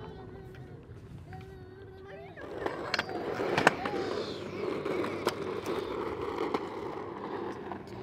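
Wheels rolling over a concrete skatepark surface: a steady rumble that comes in about two and a half seconds in, with a few sharp clicks over joints. Faint children's voices come before it.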